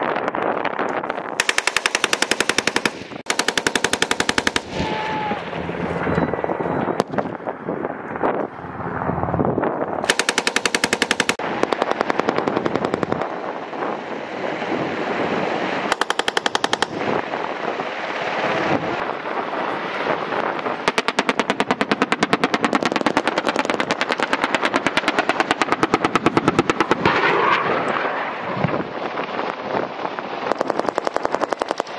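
Automatic machine-gun fire in rapid bursts: several short bursts of a second or so in the first half, then a long stretch of near-continuous firing over the last third. A steady noisy rumble fills the gaps between bursts.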